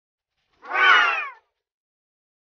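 A single cat meow, falling in pitch and lasting under a second.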